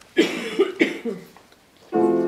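A person's voice in three short, loud bursts within the first second, then the first note of piano music starting near the end.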